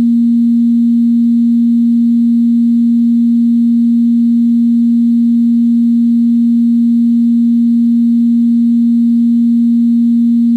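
Harvestman Piston Honda Mk II wavetable oscillator holding one steady, plain sine tone at a fixed low-middle pitch, with no change in pitch or loudness. The oscillator is set to the start of its wavetable, position 000, where the wave has almost no overtones.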